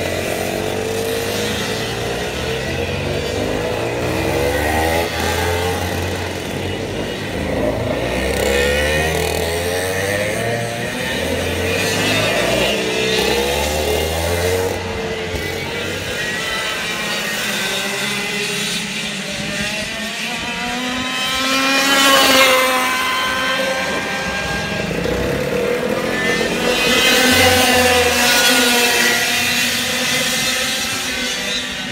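A pack of 100cc two-stroke racing kart engines lapping the circuit, several engine notes revving up and down over one another as the karts brake and accelerate through the corners. The sound swells loudest as they pass about two-thirds of the way in and again near the end.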